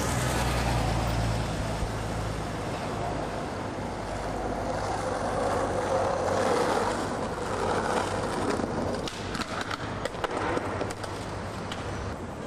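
Skateboard wheels rolling over street pavement with a continuous gritty roll, over a low hum of car traffic early on. From about nine seconds in come several sharp knocks.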